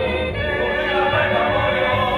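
Musical-theatre cast singing together as an ensemble, with several voices holding sustained notes.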